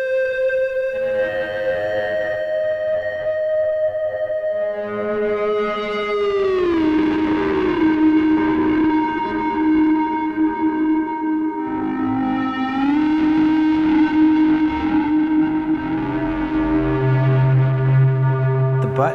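Therevox ET-4.3 synthesizer played through a delay and a distortion pedal: sustained, distorted notes rich in overtones that glide smoothly down in pitch about six seconds in and back up about thirteen seconds in, with a lower note joining near the end.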